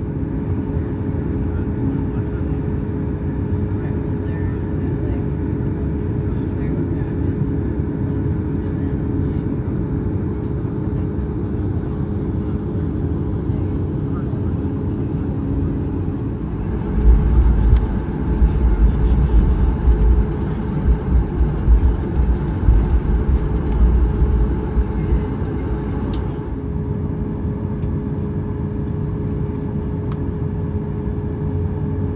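Steady cabin noise of a Boeing 737 MAX 8 taxiing, its engines humming at low power with a steady tone under the noise. About seventeen seconds in, a deep, uneven rumble joins for around nine seconds, then dies back to the steady hum.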